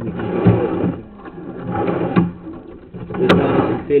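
Sewer inspection camera's push rod being fed off its reel into a drain line: uneven rattling and scraping strokes over a steady low hum, with a sharp click a little after three seconds in.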